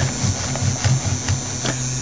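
Steady electrical hum with a faint high whine from the switched-on Anet A8 3D printer, its nozzle and bed preheated.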